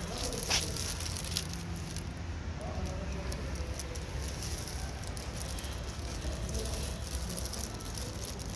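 Steady low rumble of city street background noise, with a few faint crackles and clicks.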